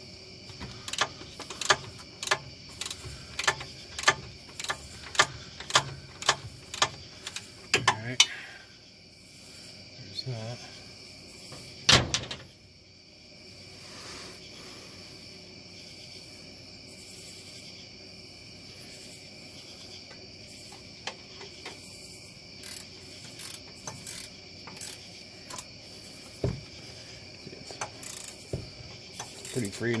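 Hand ratchet wrench clicking in irregular runs as a power steering rack mounting bolt is loosened, with a few heavier knocks near the middle and a quieter stretch before the clicking picks up again near the end.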